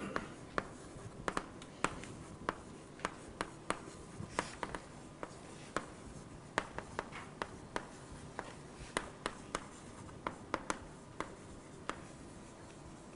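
Chalk writing on a blackboard: a string of irregular sharp taps and short scratches, several a second.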